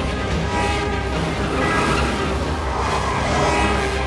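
Orchestral film score with loud, sustained brass-like chords over a deep low rumble.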